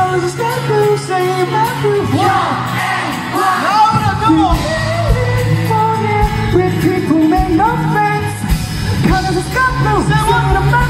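A live rock band playing in a concert hall: a male singer with electric guitar, bass and drums, heard from the audience, with shouts from the crowd. The drum beat comes in clearly about four seconds in.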